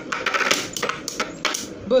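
Two Beyblade Burst spinning tops whirring in a plastic stadium and clashing, with a run of sharp, irregular clacks as they strike each other.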